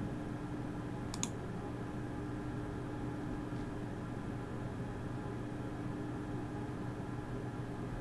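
Steady low hum and room noise, with one sharp computer click about a second in.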